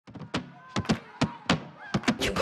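A series of sharp percussive thuds in an uneven rhythm, about six in two seconds, some of them coming in quick pairs.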